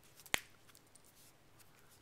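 The plastic back cover of an HTC Droid Incredible smartphone snapping into place as it is pressed on, one sharp click a third of a second in, followed by faint handling ticks.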